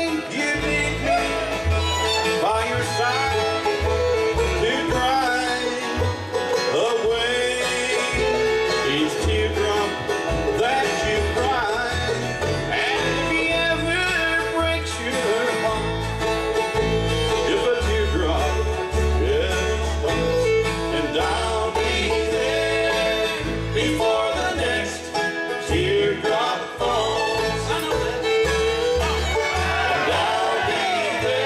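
Live bluegrass band playing an instrumental stretch of a song: fiddle, banjo, acoustic guitars and upright bass, with a steady bass pulse underneath.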